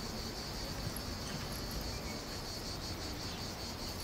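Insects chirring in a steady, high-pitched outdoor chorus over a faint low background rumble.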